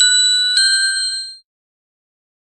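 Philips sound-logo chime: a bright, bell-like ding with a second strike about half a second later, ringing out and fading away within about a second and a half.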